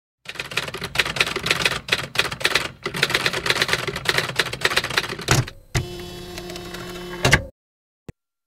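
Rapid, irregular clacking of keys being typed for about five seconds. Then a thud and a steady hum lasting about a second and a half, ending in a sharp clunk.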